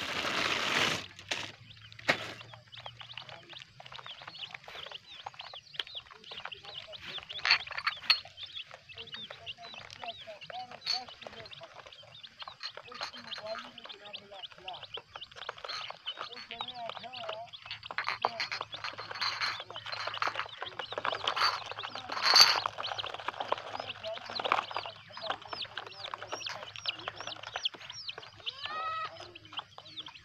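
A flock of young chicks peeping continuously, a dense chorus of short, high chirps. A brief louder rush of noise comes in the first second.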